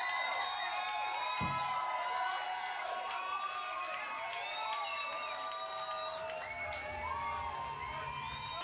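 Concert crowd cheering, whooping and screaming, many voices overlapping, with a single thump about a second and a half in.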